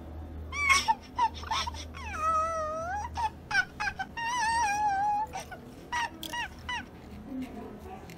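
High-pitched, squeaky cartoon-character voice: a run of short squeals and chirps, with two longer wavering, whining notes about two and four seconds in.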